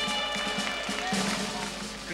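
Band accompaniment playing a short instrumental bridge between sung verses, with steady held tones over a light rhythmic backing.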